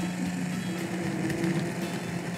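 Handheld immersion blender running steadily with an even motor hum, its blade submerged in a small saucepan of hot chili-garlic sauce, blending it.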